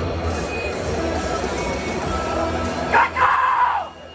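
Stadium crowd noise with music over the PA, then about three seconds in a man lets out one long, loud yelled "caw" that falls in pitch, the BattleHawks fans' hawk-call cheer.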